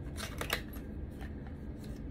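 Small cardboard box being pulled open by hand: soft papery rustling and scraping, with a few light clicks, the clearest about half a second in.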